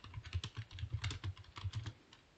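Stylus tapping and clicking on a pen tablet while handwriting notes: quick, irregular clicks, several a second.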